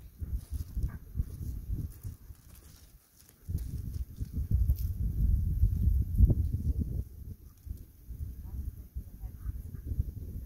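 Low, uneven rumble on the phone's microphone, loudest from about three and a half to seven seconds in.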